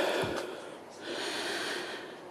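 A person breathing close to the microphone, with no words: one breath right at the start and a second, longer one about a second in.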